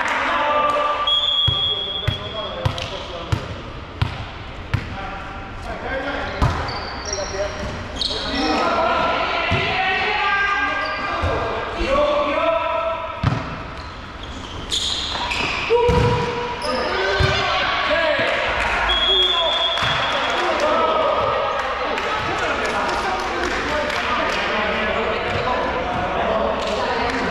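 Indoor volleyball play in a reverberant sports hall. A ball is bounced on the floor several times in a steady rhythm about two seconds in, and short sharp ball hits sound during a rally. Players' shouts and calls run throughout, with two short high whistle blasts, one near the start and one about two-thirds of the way through.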